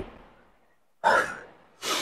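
A man's two short, forceful breaths, one about a second in and one near the end: a lifter bracing before pressing a heavy dumbbell.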